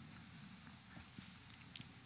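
Near silence: the low room tone of a large hall, broken by a few faint clicks and taps, with one sharper click near the end.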